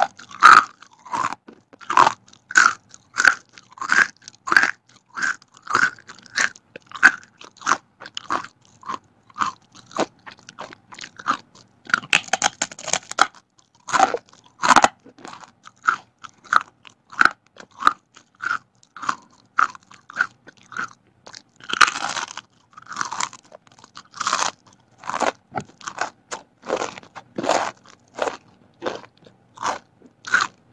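Close-miked chewing of crispy fried vegetable crackers: steady crunching about twice a second, with a few louder, denser bites, the biggest about twenty-two seconds in.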